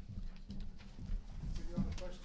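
Irregular knocks, bumps and shuffling as players get up from a table and leave: chairs, footsteps and handling close to the table microphone. Faint voices come in near the end.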